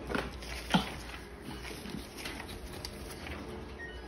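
A cockatoo flapping its wings on a perch: soft fluttering and rustling with a few short sharp sounds, the clearest about three quarters of a second in.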